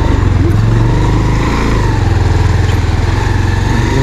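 Motorcycle engine running steadily at low revs as the bike is ridden, a loud, even low hum.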